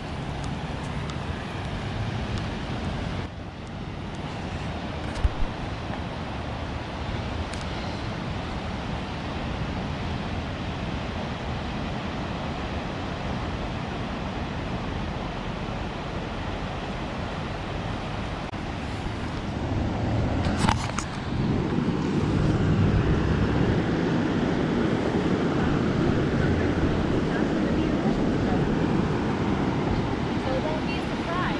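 Steady outdoor rush of ocean surf and wind on the microphone, growing louder about two-thirds of the way through.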